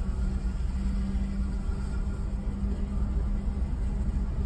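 Steady low rumble of a bus's engine and tyres heard from inside the cabin while cruising on a highway, with a constant low hum.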